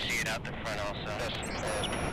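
Indistinct speech: a voice talking over a noisy background.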